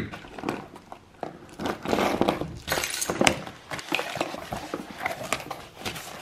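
A cardboard shipping box being opened by hand: a run of irregular rips and scrapes of packing tape and cardboard flaps, with packing foam rustling.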